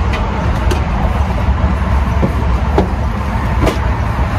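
Steady low rumble throughout, with a few light knocks and creaks as a person moves about and sits down on a Luggable Loo plastic bucket toilet.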